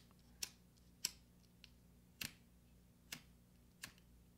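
A lighter being clicked: five sharp, short clicks at uneven gaps of roughly a second, over a faint low hum.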